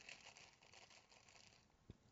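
Near silence with faint rustling as a plastic packet of fideo pasta is handled, and one soft low thump near the end.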